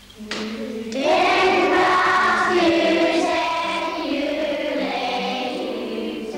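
A group of small children singing together as a choir, the voices coming in strongly about a second in and holding a sustained melody.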